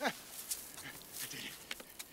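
A man's short excited yelp, falling sharply in pitch, right at the start, followed by quieter breathy sounds and small clicks.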